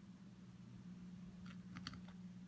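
Near silence over a low steady hum, with a few light clicks about one and a half seconds in as licorice allsorts candies knock together on a plate while one is picked out.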